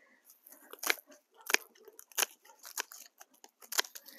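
Dry, dead stalks of Autumn Joy sedum snapping off at the base as they are cleared: a string of short, crisp cracks, about one every half second to second.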